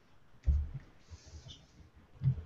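A dull thump about half a second in, followed by a few faint clicks.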